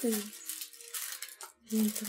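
Women's conversational speech at the start and again near the end, with a quieter stretch in the middle holding a faint, steady held tone.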